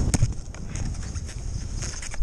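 Skis scraping over hard-packed, choppy snow on a downhill run, with a sharp clatter just after the start and scattered clicks, over wind rumbling on the microphone.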